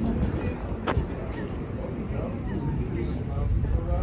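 Outdoor ambience of wind rumbling on the microphone, with voices of passers-by talking in the background and a single sharp click about a second in.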